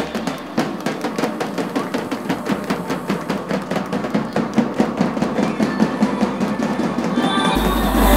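Two large double-headed Albanian folk drums (lodër) beaten with sticks in a fast, steady beat. Near the end a louder burst of music cuts in.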